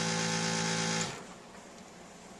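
Follicle-aspiration suction pump running with a steady motor hum, then stopping about a second in. This is the gentle suction that draws follicular fluid into a collection tube.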